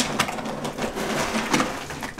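Dry cat kibble pouring and rattling into a feed bowl: a dense, continuous patter of small hard pieces that eases off near the end.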